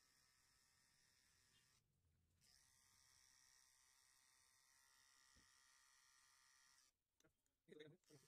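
Near silence: a faint steady hiss, with a brief faint sound just before the end.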